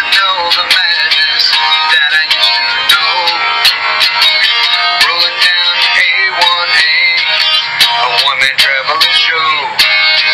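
A guitar-backed rock song with a melody line that bends in pitch, played back through the small speaker of an Olympus digital voice recorder.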